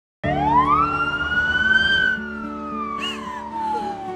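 Ambulance siren wailing: the tone sweeps quickly up, peaks about halfway through, then slides slowly back down.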